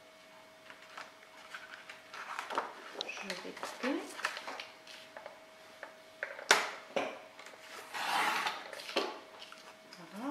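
Black cardstock being handled and cut on a sliding paper trimmer. Small taps and rustles lead to one sharp click about six and a half seconds in, then a rasp of about a second as the blade slides along the card.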